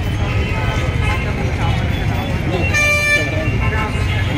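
A vehicle horn sounds once, a single steady tone held for about a second near the end, over a woman talking and a steady low rumble.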